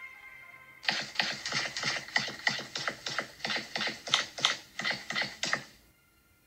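A cartoon sound effect: a rapid run of sharp, evenly spaced clicking strokes, about three a second, starting about a second in and cutting off suddenly near the end.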